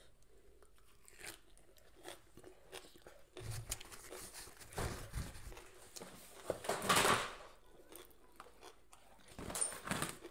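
A person chewing and biting fresh herb leaves and curry close to the microphone, with a run of louder crunches a few seconds in, the loudest about seven seconds in, and another just before the end.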